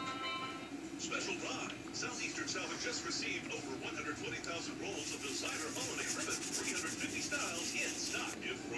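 Television in the background: music that stops about a second in, then voices talking, well below the level of a nearby speaker.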